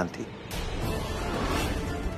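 A dramatic background-score swell comes in suddenly about half a second in and holds steady with a deep low rumble underneath. The end of a man's spoken word comes just before it.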